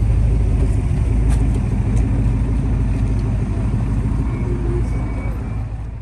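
Car engine idling close by, a steady low rumble.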